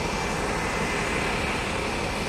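Steady outdoor traffic noise: an even hum of passing vehicles, with a faint high whine running through it.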